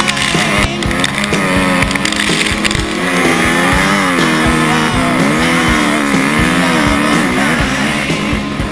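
Dirt bike engine revving up and down under load as the bike climbs a steep dirt hill, with rock music playing over it.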